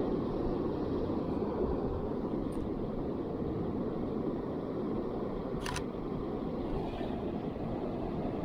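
A camera shutter fires once, a sharp click about two-thirds of the way in, over a steady low rumble of wind and surf at the beach.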